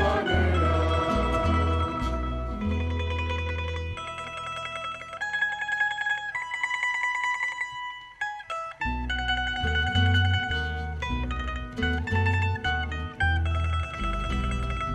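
Rondalla of Spanish twelve-string lutes and guitars playing an instrumental passage. The low bass notes drop out about four seconds in and leave the higher plucked melody alone; after a brief dip, the full ensemble with bass comes back in about nine seconds in.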